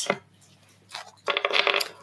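A brief metallic jingle of several ringing tones, about half a second long, starting a little over a second in.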